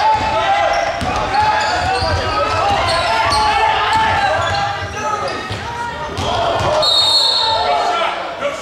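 Basketball bouncing on a gym floor under continuous shouting from players and spectators, echoing in the hall. A short high squeal comes about seven seconds in.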